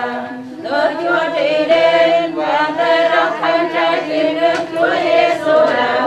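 A group of men and women chanting a Vietnamese Catholic prayer together in unison, sung on held pitches, with a brief breath pause about half a second in.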